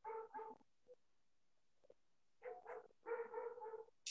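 A dog barking faintly over a video-call microphone: two quick barks at the start, then more barks about two and a half seconds in, the last one drawn out.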